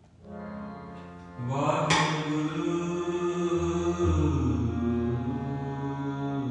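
Sikh shabad kirtan, devotional music of long held notes. It comes in softly just after the start and grows fuller about a second and a half in, with a sharp strike near two seconds.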